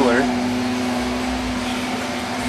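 A steady mechanical hum with one constant low tone under a noise, like a running air-conditioning unit or fan.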